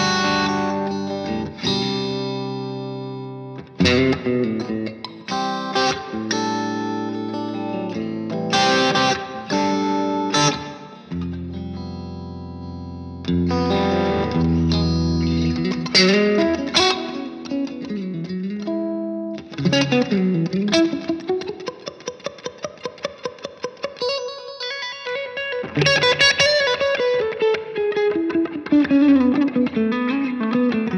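PRS Custom electric guitar with its humbuckers switched to single-coil sound, played clean through an amp: ringing chords for most of it, then single-note lines whose notes slide up and down in pitch over the last ten seconds.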